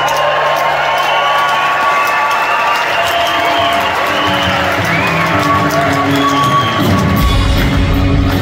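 Live band with trumpets, guitars and drums playing in a concert hall, the audience cheering and whooping along. The bass and drums come in heavily near the end.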